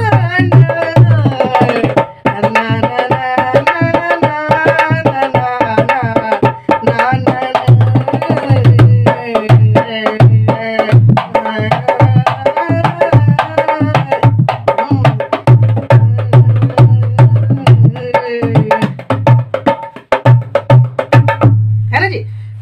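A dholak played in a steady, fast theka rhythm, its low bass head ringing deep under the sharp strokes, while a man hums and half-sings a bhajan melody over it.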